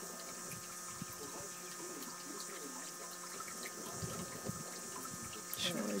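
Quiet, steady rushing noise like running water, with faint distant voices underneath.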